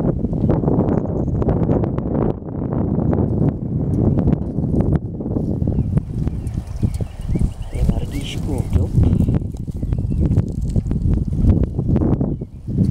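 Strong wind buffeting the microphone: a loud, gusting low rumble that rises and falls.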